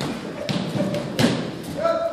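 Two thuds of boxing gloves landing in sparring, the second louder, about two-thirds of a second apart. A voice starts briefly near the end.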